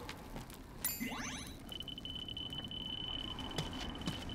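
Cartoon electronic gadget sound effect: a quick rising whine about a second in, then a steady high tone that holds, like a handheld scanner powering up and reading.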